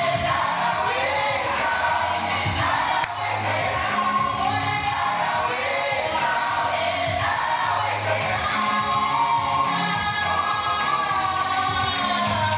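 Live gospel music: a woman sings lead into a microphone over band accompaniment with a steady bass line, and backing voices join in.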